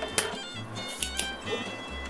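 Background music with a steady melody, over which a sharp click comes just after the start and fainter clicks about a second in: a spring-loaded desoldering pump snapping as its plunger fires to suck molten solder off the circuit board.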